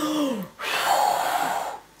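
A woman blowing out hard through her mouth, a long breathy whoosh of about a second that acts out the wolf blowing on the house. It follows a short falling voiced sound.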